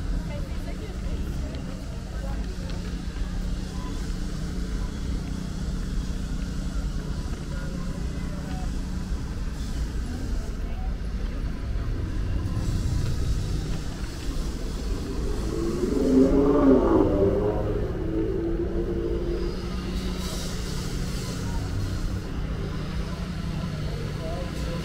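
Busy city street ambience: a steady low rumble of traffic with the voices of passing pedestrians. Two-thirds of the way through, a passer-by's voice comes close and is the loudest sound for a couple of seconds.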